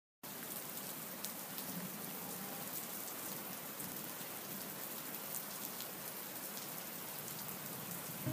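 Steady rain, an even hiss with scattered faint drop ticks.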